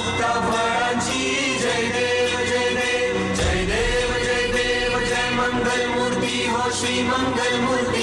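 Devotional Ganesh music: a choir chanting long held notes over instrumental backing.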